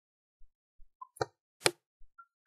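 Two sharp computer mouse clicks about half a second apart, in the second half.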